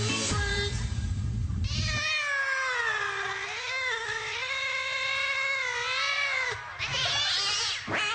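Music with a beat, then the beat drops out and a single long, wavering high-pitched wail holds for about four and a half seconds, followed by a short, bright burst of sound near the end.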